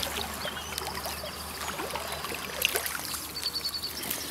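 Shallow chalk stream flowing steadily past the bank, with light rustling of reed stems as a hand reaches in among them.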